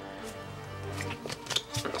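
Soft background music with steady held notes. Faint light clicks of handled trading cards come in the second half.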